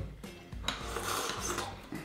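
Rasping and scraping of kitchen utensils working food on a wooden cutting board, with a sharp click about two-thirds of a second in.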